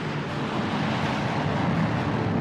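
A rushing whoosh of noise that slowly swells louder, with a faint low hum under it: a zoom sound effect.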